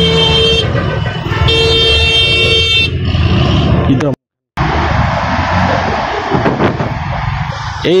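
A loud vehicle horn blaring twice: the first blast stops about half a second in, and the second runs for about a second and a half. After a brief dropout just after 4 s, steady road and engine noise from the moving motorcycle.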